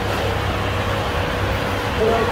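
Steady background hum of a bus station hall: a constant low machine drone with a thin unchanging tone above it and no break.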